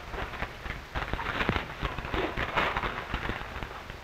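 A folded newspaper clipping being unfolded by hand, the paper crackling and rustling irregularly.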